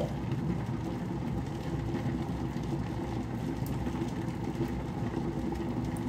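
Garment steamer heating up with the water inside starting to bubble: a steady low hum.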